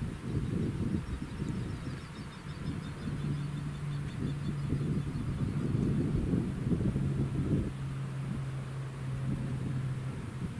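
Fendt 936 tractor pulling a Claas Quadrant 5300 large square baler through the straw at a distance: a steady low engine hum that drops slightly in pitch about two-thirds of the way in, under a gusty rumble of wind on the microphone.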